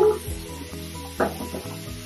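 Cleaner spritzed from a trigger spray bottle onto the tub: short hissing sprays, the loudest at the start and another a little over a second in, over background music with a steady beat.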